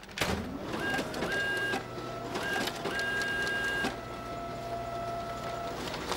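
Office photocopier running. A click and a motor whining up to speed are followed by steady mechanical whirring, with high tones that cut in and out a few times before one lower tone holds and stops near the end.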